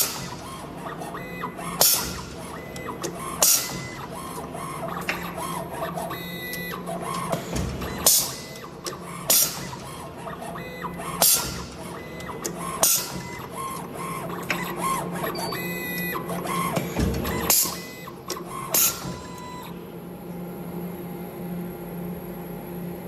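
Automatic cable stripping and cutting machine working through its cycle: a loud sharp snap every one to two seconds as it cuts and strips the jacket, with motor whirring between snaps over a steady hum. The snaps stop a few seconds before the end, leaving the hum.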